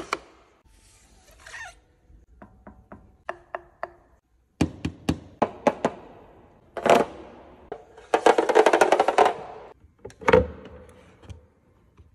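A string of sharp clicks and knocks from a hand handling a car's key fob and body trim. About eight seconds in comes a dense run of rapid clicking lasting about a second and a half, followed by a single thump.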